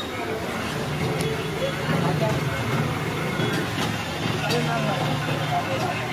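Busy street noise: a vehicle engine runs steadily under a background of voices.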